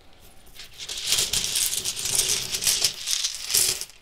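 Rune stones clicking and rattling together inside a velvet drawstring pouch as a hand rummages and shakes them: a dense clatter of many small clicks that starts about half a second in and stops just before the end.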